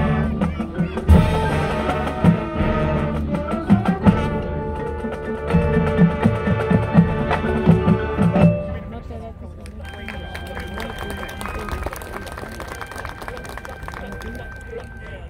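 Marching band playing, with brass and drumline hits over full chords. About eight and a half seconds in the volume drops suddenly to a soft passage of held, ringing notes.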